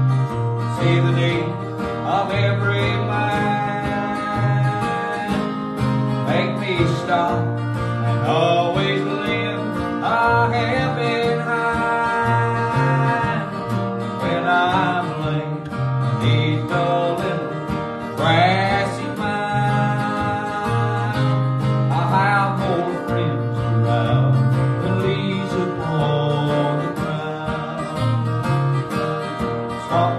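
A man singing a slow country gospel song, accompanying himself on acoustic guitar with a second guitar played alongside.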